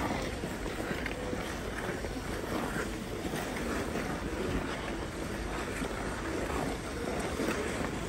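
Ice skate blades scraping and gliding on an outdoor rink, heard through a steady rushing of wind on the microphone, with faint short scrapes.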